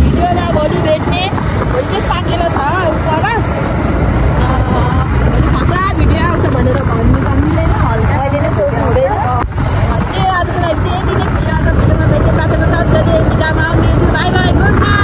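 Several voices talking and chattering over the steady low rumble of a motorcycle on the move.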